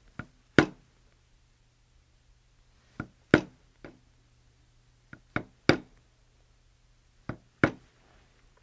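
A mallet striking a steel veiner stamping tool into leather on a granite slab: about ten sharp knocks in four short groups of two or three, roughly two and a half seconds apart. The tool is being moved and angled between groups to shade the veins of a tooled leaf and give it depth.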